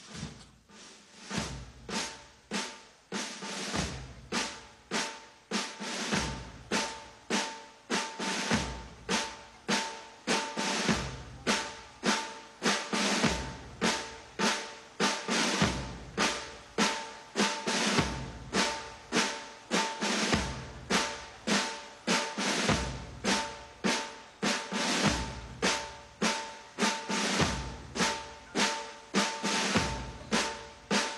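Military marching drums beating a steady cadence: rapid snare drum strokes with a deep bass drum hit about every two and a half seconds, keeping time for cadets on the march.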